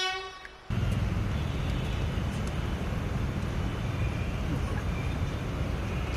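A held brass bugle note fades out in the first half-second. After a sudden cut, a steady low rumble of wind buffeting the microphone takes over, with faint voices behind it.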